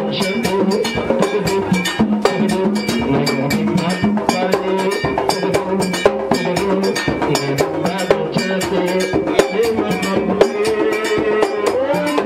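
Haitian Vodou drumming with a fast, steady beat and a struck bell, with voices singing over it.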